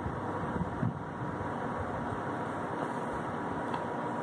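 Steady background hiss with a faint steady tone and no distinct events: continuous room noise of the kind a running fan or air conditioner makes.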